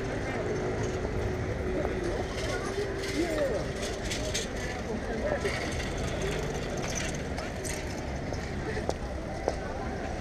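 City street ambience: a steady low rumble of traffic with faint, indistinct voices of passers-by and a few light clicks.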